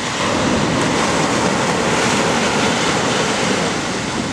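Sea water rushing and washing in shallow surf: a steady noisy wash that swells just after the start and eases near the end.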